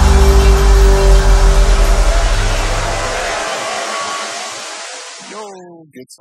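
Electronic dance track ending on a held, bass-heavy chord with a hissing wash above it, fading out over about five seconds. A voice starts speaking near the end.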